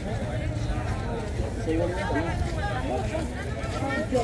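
Open-air produce market crowd: several people talking at once, vendors and shoppers, with no one voice clear, over a steady low rumble.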